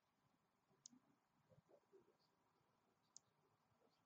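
Near silence, broken by two faint, sharp high-pitched clicks about two seconds apart.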